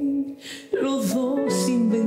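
A female vocalist singing a slow ballad live with instrumental accompaniment. A held note with vibrato ends, there is a brief break, and the voice and accompaniment come back in about three-quarters of a second in.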